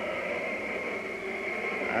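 A steady rushing hiss with a faint high whistle running under it, the background noise of an old radio broadcast recording.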